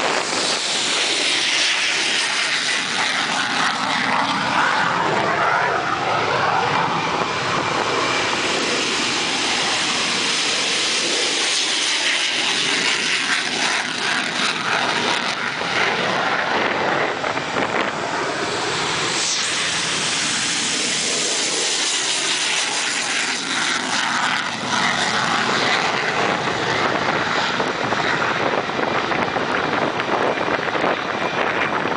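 Military jet engines at take-off power, loud and continuous, as combat jets roll down the runway and climb away. The tone of the noise sweeps up and down as a jet passes, once in the first few seconds and again from about seventeen seconds on.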